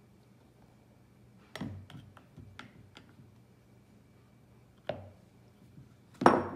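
Light clinks and knocks of a small bowl tapping against the rim of a mixing bowl as a raw egg is tipped out of it. The clearest clink comes about a second and a half in, a few smaller ticks follow, and one more knock comes near the end.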